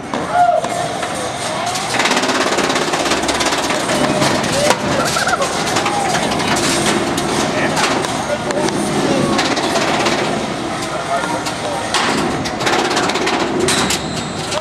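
Spectators shouting and cheering in a hall while two beetleweight combat robots, a melty-brain full-body spinner and a two-wheeled robot, fight in the arena, with repeated sharp knocks of hits that come thickest near the end.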